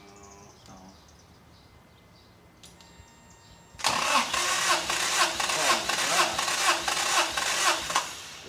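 Toyota 3A four-cylinder engine cranked over by the starter without firing, during a compression test. It starts about four seconds in and runs as an even chugging of roughly four compression strokes a second.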